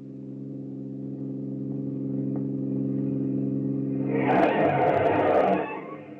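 Radio-drama sound effect of a car approaching: a steady engine hum growing louder for about four seconds, then a loud skid of tyres as it pulls up, dying away near the end.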